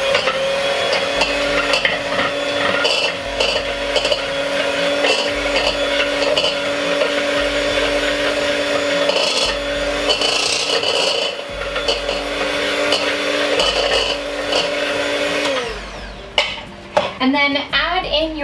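Electric hand mixer running steadily as its beaters cream butter in a mixing bowl, with the beaters knocking and scraping against the bowl. The motor winds down and stops a couple of seconds before the end.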